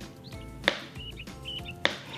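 Knife slicing through a banana and tapping the cutting board twice, a little over a second apart.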